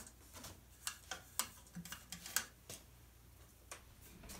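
Faint, scattered light clicks and taps, about nine of them at irregular intervals, as hands handle a glued-up segmented wooden bowl blank on a stopped wood lathe.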